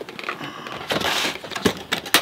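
Hard plastic carry case being set down and slid across a wooden workbench: a scrape about a second in, then a couple of light knocks near the end.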